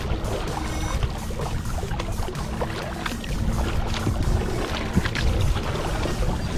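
Kayak paddle strokes splashing and water washing along the kayak's hull, with a steady rumble of wind on the microphone. Faint music plays underneath.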